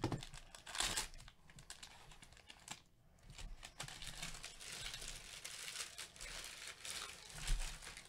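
Plastic trading-card pack wrapping crinkling and rustling as gloved hands handle it, in irregular bursts that thicken through the middle. There is a soft knock near the end, the loudest moment.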